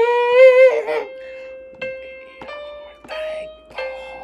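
A voice sings a short note sliding upward, then a piano app on a tablet plays about four single held notes one after another, stepping a little higher each time and then dropping back to the first pitch.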